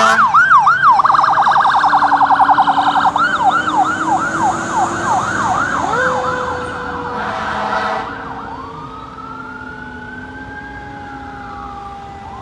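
A 2009 Spartan Gladiator Evolution fire engine's siren on a code-3 response. It runs a fast yelp, breaks into a rapid warble for a couple of seconds, then goes back to the yelp. After a short hiss near the middle it switches to a slow rising-and-falling wail, growing fainter as the truck drives away.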